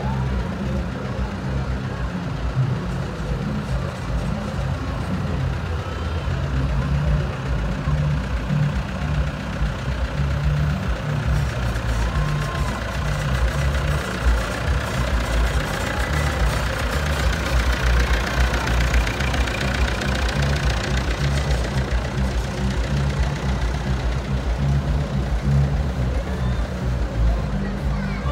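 Farm tractor engine running steadily as the tractor drives slowly past pulling a parade float, getting a little louder as it comes closest around the middle.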